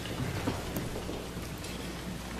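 A congregation rising to its feet: a soft, steady rustle and shuffle of many people standing up, with a few faint knocks.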